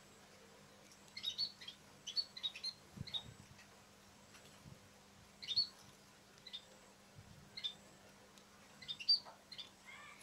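Munias chirping: short, high peeps in small clusters every second or so.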